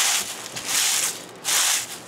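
Dehydrated mint leaves crunching and crackling as a hand crushes them in a metal bowl, in three bursts about two-thirds of a second apart. The crisp rustle shows the leaves are fully dried.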